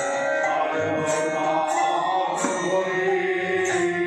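Devotional kirtan singing on long, sustained notes, with a metallic beat about twice a second from hand cymbals keeping time.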